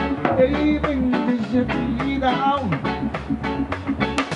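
Live reggae band playing an instrumental passage: drum kit keeping a steady beat under a deep bass line, with guitar.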